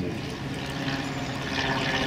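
Steady rushing background noise with a faint low hum underneath.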